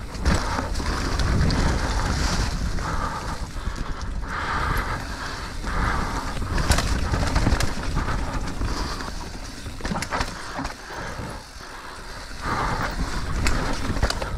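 Mountain bike riding down a dirt singletrack covered in dry leaves: steady tyre noise over dirt and leaves with wind rumble on the microphone, and a few sharp clacks from the bike over bumps.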